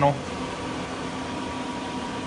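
Steady mechanical hum of running shop machinery, with a faint steady high tone over it.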